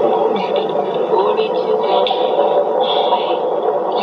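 Cartoon soundtrack with children's voices, sounding thin and boxy like an old TV or tape recording, with the lowest and highest sounds cut away.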